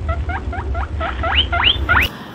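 Squeaky, chirpy sound track: quick high squeaks about six a second over a steady low hum, turning in the second half into upward-sweeping squeals.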